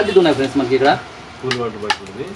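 A man talking, with two sharp clicks in the last half second.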